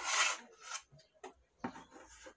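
Steel putty knife scraping skim coat compound across a wall: one long, loud stroke, then a few shorter, fainter strokes.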